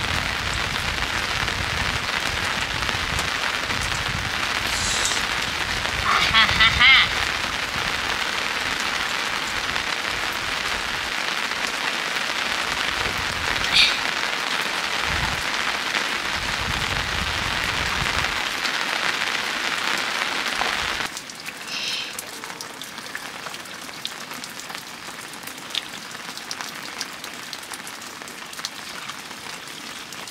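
Steady rain falling on the roof and wet ground. About two-thirds of the way through it drops to a quieter hiss.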